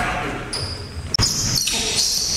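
A basketball bouncing on a hardwood gym floor during play, with players' voices. The sound breaks off sharply for an instant about a second in, then carries on.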